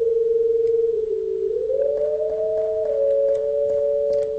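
Two computer-generated sine tones: one held steady, the other pitch-shifted by a variable delay line, dipping about a second in, gliding up a second later and stepping slightly down near the end as the transposition setting is changed. Faint clicks come through where the delay jumps and the waveform breaks.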